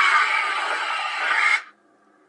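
A woman's loud, harsh horror jump-scare scream, cutting off suddenly about one and a half seconds in, after which only a faint low hum remains.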